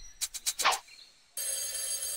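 A few short clicks, then about a second and a half in a cartoon alarm clock's bell starts ringing steadily, a wake-up alarm.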